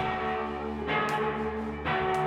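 Live rock band in a quieter passage: electric guitars ringing out sustained, bell-like chords, struck again about once a second, with the full drum beat dropped out.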